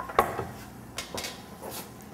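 A few sharp clinks and knocks of cookware and utensils on a kitchen range and counter, the loudest just after the start and two more about a second in.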